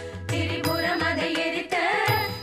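Devotional music in Carnatic style: a voice singing a wavering melody over steady accompanying tones, with a brief dip in loudness right at the start.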